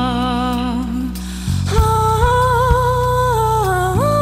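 A woman singing a slow song in long held notes over a backing track of low sustained chords. After a short gap about a second in she starts a new phrase of slowly falling notes, and a soft drum beat comes in at about two beats a second.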